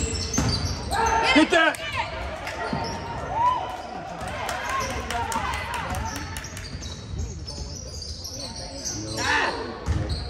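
Basketball game play in an echoing school gym: a basketball bouncing on the hardwood court, mixed with short sharp knocks and indistinct shouts from players and spectators, loudest about a second in and again near the end.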